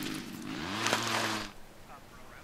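A small bluegill being dropped back into a hole in the ice: a short splash of water, sharpest about a second in, that ends about a second and a half in.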